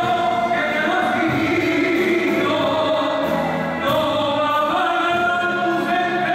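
Male solo singer singing long held notes with vibrato into a microphone, backed by a live band.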